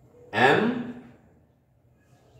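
A man's voice saying a single word, 'em' (the letter m), its pitch rising then held and trailing off, followed by near silence.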